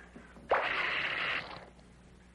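Soda siphon spraying: a sharp hiss that starts suddenly about half a second in and cuts off after just under a second.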